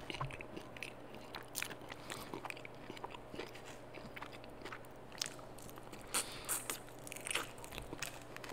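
Close-miked eating of a parmesan chicken wing: irregular crisp bites, crunching and chewing. The crunches come thicker and sharper about six seconds in.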